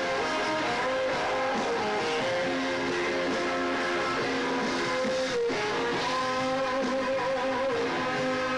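Live electric guitar lead on a white Stratocaster-style guitar, playing slow held notes with bends and wide vibrato over the band's sustained backing.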